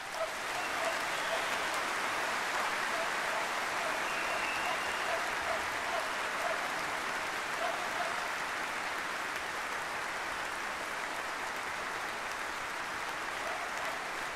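Large arena audience applauding, breaking out at the start and holding steady and loud.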